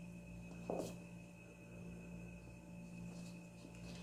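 Faint sounds of a spoon spreading soft cream filling in a metal cake pan, over a steady electrical hum, with one brief soft knock about three-quarters of a second in.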